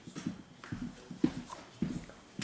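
Footsteps of a person walking, a step about every half second.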